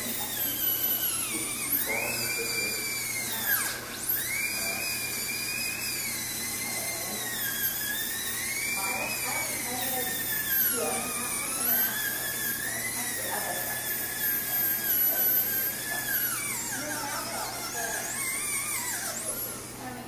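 Dental handpiece with a bur whining as it grinds leftover bracket adhesive off the teeth after braces removal. Its pitch keeps sagging and recovering as the bur bites and is eased off, and it winds down near the end.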